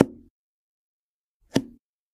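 A fork cutting down through a soft mango mousse cake and knocking against the cardboard cake board beneath: two short, sharp knocks about a second and a half apart, each with a brief low ring.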